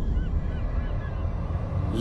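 Low, sustained rumble from a cinematic trailer hit, with a quick series of faint, short, arching chirps above it that stop a little after halfway.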